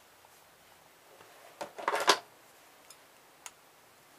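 Slip-joint pliers gripping and scraping at a plug's brass terminal and plastic housing: a short run of sharp clicks and scrapes about a second and a half in, then a couple of faint ticks.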